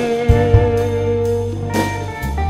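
Slow electric blues band recording: a held melody note rings over bass and drums, with a crash at the start, kick-drum thumps, and another crash near the end.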